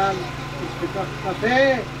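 A man's voice amplified through PA loudspeakers, exclaiming, with the loudest drawn-out "oh!" about one and a half seconds in. Under it runs a steady low hum.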